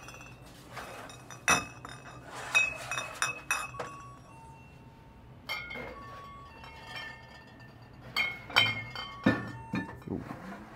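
Glass liquor bottles clinking against each other as they are set onto a store shelf, in several clusters of sharp clinks, some leaving a short ringing tone.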